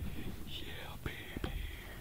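Men whispering to each other.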